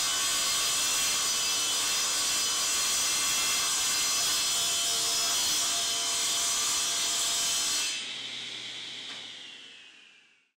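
Table saw running and ripping through a plywood panel, with a steady whine from blade and motor. About eight seconds in the cutting stops and the saw is switched off. The whine falls in pitch and fades as the blade spins down.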